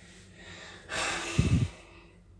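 A sharp, breathy exhale close to the phone's microphone, lasting about a second and starting about halfway in, with a louder low burst in its second half.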